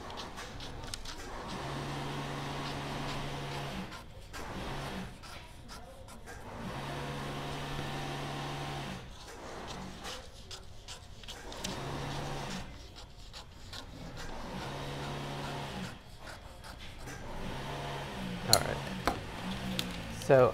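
Dressmaking shears cutting through pattern paper in several long strokes of two to three seconds each, with a steady low drone and quiet gaps between cuts, then a few sharp clacks near the end as the shears are set down on the cutting mat.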